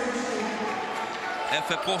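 Basketball bouncing on a hardwood court, echoing in a large sports hall.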